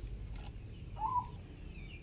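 A bird gives a short, faint call about a second in, with a few thin higher chirps after it, over a low steady outdoor rumble.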